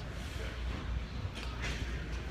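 Handling noise from a phone carried close against a shirt: a steady low rumble, with a brief rustle about one and a half seconds in.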